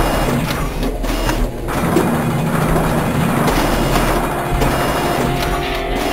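Intro sound design of machine parts moving and locking together: a dense mechanical whirring with a few sharp clicks over a steady low rumble.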